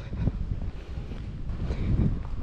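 Wind rumbling on the microphone, low and uneven, with no clear pitched sound.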